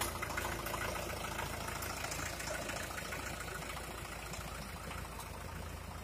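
Swaraj 841 tractor's diesel engine running steadily at low revs.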